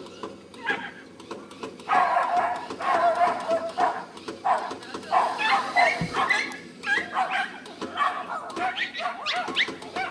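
A dog yelping and barking excitedly in quick, high-pitched calls, beginning about two seconds in and continuing to the end, over a steady low hum that stops with a thump about six seconds in.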